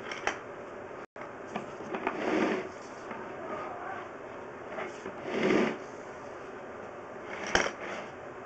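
Handling noise as a sewer inspection camera is worked down the pipe: two brief rubbing swishes and a couple of sharp clicks over a steady hiss.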